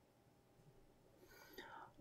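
Near silence: room tone, then a faint, breathy murmur of a man's voice near the end.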